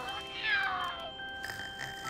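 A cartoon owl's short vocal sound that falls in pitch over about half a second as the owl nods off to sleep, heard over soft background music.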